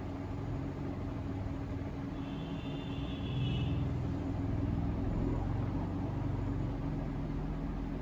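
Low background rumble with a steady hum, swelling louder for a few seconds in the middle. A brief faint high tone sounds about two seconds in.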